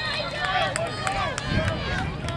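Many voices from spectators and the sideline shouting and cheering at once, cheering a long run that ends in a touchdown.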